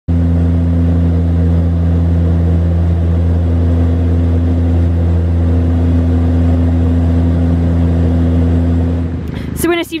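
Steady low drone of an aircraft's engines during flight, unchanging, then cutting off suddenly about nine seconds in.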